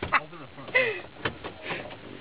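A person laughing in a few short, separate bursts.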